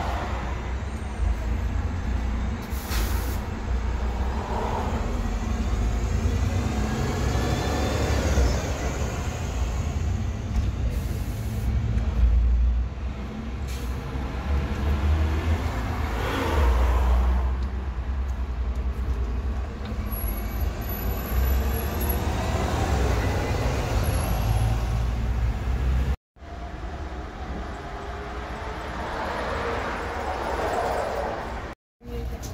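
City bus engines running at a stop, with a short hiss of air brakes released about three seconds in, then a bus pulling away with its engine rising around the middle. The sound breaks off briefly near the end at a cut, and the rumble of a bus continues.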